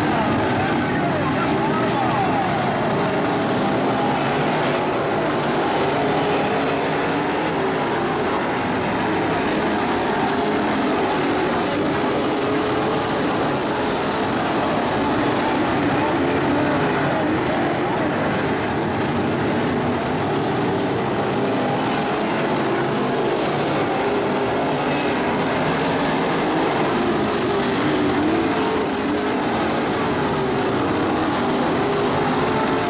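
A pack of IMCA Modified dirt-track race cars running at racing speed, their V8 engines blending into one loud, steady sound, with engine pitch rising and falling as cars go through the turns.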